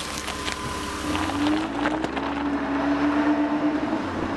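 An engine running steadily, its pitch climbing slowly from about a second in, with a few sharp clicks.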